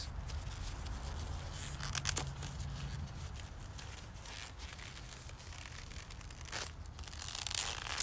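Handling noise from a gloved hand gripping a looped plastic tube: rustling, with a quick cluster of clicks about two seconds in and a hissing swish near the end, over a low steady hum.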